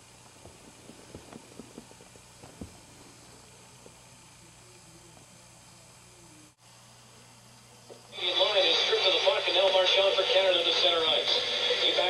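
A quiet room with a few faint rustles, then about eight seconds in a clock radio comes on loud with a sports commentator calling an ice hockey game.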